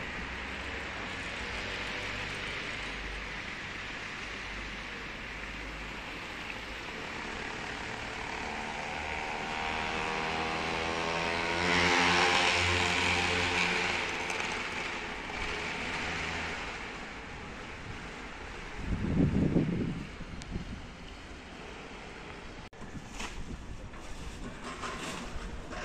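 Town street traffic: a motor vehicle passes close by, its engine swelling to the loudest point about halfway through and then fading away. A brief low rumble follows near the end.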